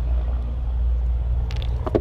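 A steady low rumble, with a few short sharp clicks near the end as a spark plug is worked free by hand from an outboard's cylinder head.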